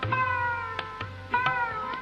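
Sarod played in a raga, a few plucked strokes whose notes slide down in pitch, with tabla bass strokes underneath, early and again about a second and a half in.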